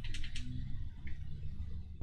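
A few soft clicks in the first half-second from the keypad buttons of a Quansheng UV-K5 handheld radio being pressed, over low handling rumble from the radio held in the hand.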